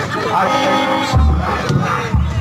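Shouting voices over crowd noise, then dance music with a heavy bass drum beat starts about a second in.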